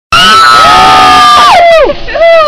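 Loud, long yelling from at least two voices as a zipliner pushes off the platform: held on one high pitch for over a second, then sliding steeply down near the end.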